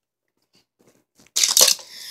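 A Hot Wheels track launcher set to one notch firing a die-cast car onto plastic track: a sudden loud plastic clatter about a second and a half in, lasting under half a second and trailing off.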